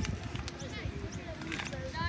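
Several voices calling and shouting at once across an open sports field, some calls rising and falling in pitch, over an uneven low rumble on the microphone.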